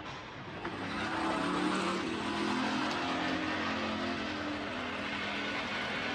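Motor traffic noise with an engine hum that swells about a second in and then holds steady.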